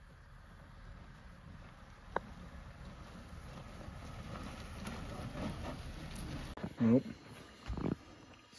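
A vehicle driving slowly over rough grassy ground, a low engine and tyre rumble that grows louder as it comes closer.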